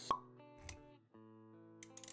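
Intro sound effects over soft sustained synth-like music notes: a sharp click just after the start, then a low thud a little over half a second in.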